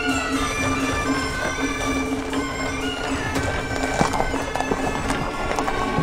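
Festive procession music played on reedy wind instruments over a steady held drone. Horse hooves clip-clop along with it, mostly in the second half.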